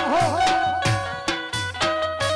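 Gujarati folk music: a steady beat of about two drum strokes a second under a sustained melody that wavers up and down in pitch near the start.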